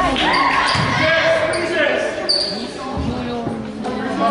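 Basketballs bouncing on a gym floor, a few thuds, under voices calling out, echoing in a large hall.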